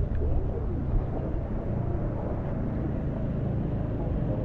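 Harbour ambience: a steady low rumble from a small outboard-powered dinghy crossing the harbour and wind on the microphone, with faint voices near the start.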